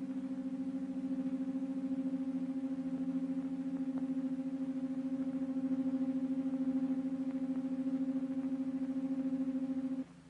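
Steady low machinery hum on an old film soundtrack, one held tone with overtones and a fast flutter in its level, as a crane lowers the projectile capsule into the space gun. It drops away suddenly at the very end.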